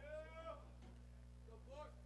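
Near silence over a steady low hum, with a faint distant voice calling out twice, briefly at the start and again near the end.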